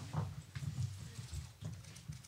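Faint, scattered knocks and thumps, about five in two seconds, as the applause fades.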